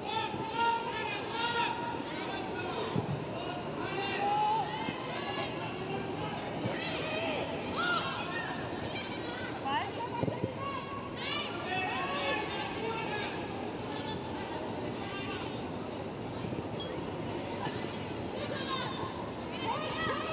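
Stadium ambience during a women's football match: a steady crowd murmur with players' shouts and calls from the pitch rising through it.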